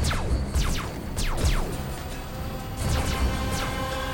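Dark film score with steady held tones over a heavy low rumble, cut through by a series of quick sweeps falling in pitch, several in the first two seconds and more about three seconds in: battle sound effects from a machine war.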